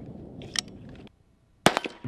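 A faint click about a quarter of the way in, then a moment of silence and a single sharp, loud shot from an AR-style rifle near the end.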